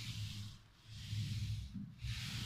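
Paint roller on an extension pole being rolled over a plasterboard ceiling, spreading white paint mixed with primer sealer. Two rolling strokes with a short pause between them.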